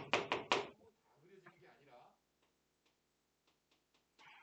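Chalk on a blackboard as a curve is drawn: a few short scratchy strokes, then faint light taps and clicks.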